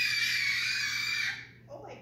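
A toddler's long, very high-pitched squeal, held on one note with a slight dip in pitch, stopping about one and a half seconds in.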